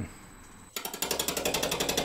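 A roughing gouge starts cutting a spinning paper birch log on a wood lathe about three-quarters of a second in, making a rapid, even clatter. The tool is striking the high spots of the bark-covered log, which is not yet turned round.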